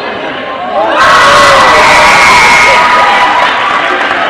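Gymnasium crowd of basketball spectators breaking into loud cheers and shouts about a second in, with some high-pitched sustained yells, and staying loud.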